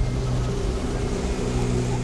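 A boat's 150-horsepower jet outboard motor running at a steady, even drone while the boat travels.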